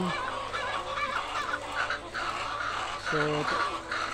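Caged laying hens clucking, a scatter of short, high calls overlapping one another.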